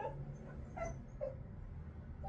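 A dog whimpering: a few short, faint whines in quick succession.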